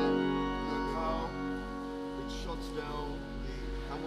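Two-manual, 27-stop Sanus organ holding sustained chords. A loud full chord drops away about half a second in, leaving a softer held registration sounding.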